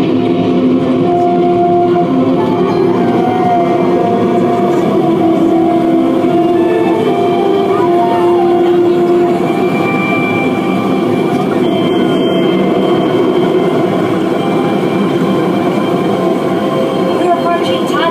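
Inside a ride submarine during its simulated dive: a loud, steady rumble and rush of churning water and bubbles past the porthole, with a low machinery hum underneath.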